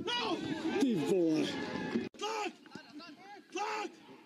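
Voices shouting on a football pitch: several overlapping excited shouts, then, after a sudden cut, two short loud calls about a second apart.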